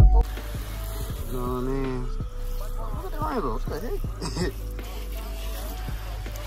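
Garden hose spray nozzle spraying water onto a car's body panels, a steady hiss, with a short laugh about four seconds in.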